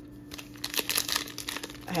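Foil booster-pack wrapper crinkling as it is handled in the fingers: a run of crisp rustles starting about a third of a second in.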